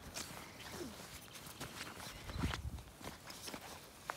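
Faint scuffing and rustling as border collie puppies scramble on grass and paw at a jacket.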